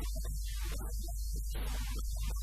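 Steady low electrical mains hum running under a man's voice.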